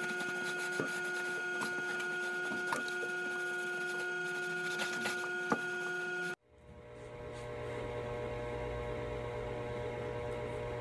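Steady electrical hum with several fixed tones and scattered light clicks and taps of hands working on wooden drawers and their metal slides. About six seconds in the sound cuts out abruptly, and a different, lower hum fades back in.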